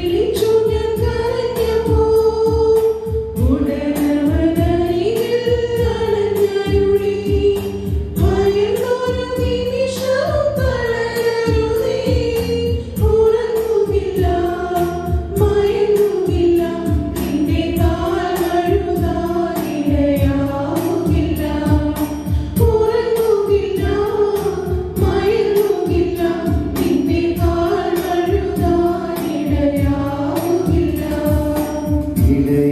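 Church choir, mostly women's voices, singing a Malayalam devotional hymn in unison into microphones. The melody is carried in long held notes over a steady rhythmic beat.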